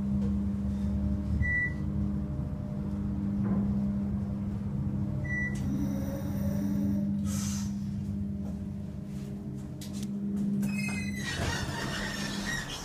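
Westinghouse hydraulic elevator car riding, with a steady low hum from its machinery. Two short high beeps sound about four seconds apart, and a cluster of clicks with a brief falling tone comes near the end.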